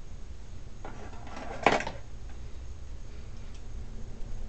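A brief rustle and clatter of small hard objects being handled, ending in one sharp click about a second and a half in, over a steady low hum.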